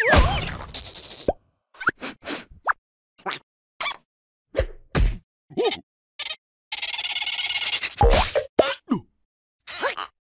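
Cartoon sound effects: a loud whack at the start, then a string of short plops and squeaky, pitch-bending character noises. A longer buzzing stretch comes about seven seconds in, and another hit follows at about eight seconds.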